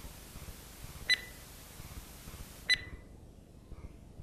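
Short electronic beeps of a countdown sound effect, one about a second in and another a second and a half later, over faint background hiss.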